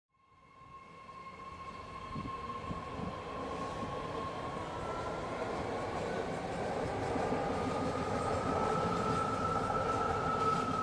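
A rapid-transit train running past: a steady high whine over a rumbling rush. It fades in from silence and grows steadily louder, and the whine steps up slightly in pitch about halfway through.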